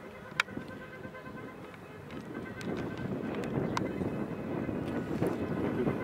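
Wind buffeting the microphone over the low rumble of approaching cars, growing louder from about two seconds in, with one sharp click near the start.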